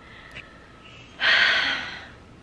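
A woman's sharp, loud breath about a second in, a short breathy rush that tapers off.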